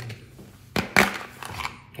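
Two sharp clacks about a second in, followed by a few lighter clicks: hard objects, tools or their cases, being handled and set down on a desk.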